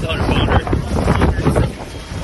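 Wind buffeting a phone microphone, a heavy low rumble, over indistinct excited voices and scattered short knocks.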